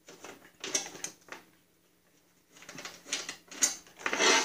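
Light metallic clicks and rattles of fender bolts being backed out and handled on a Snapper rear-engine rider's chain case. They come in two short irregular clusters, one in the first second and one near the end.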